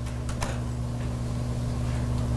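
Steady low room hum in a lecture hall, with a faint click about half a second in.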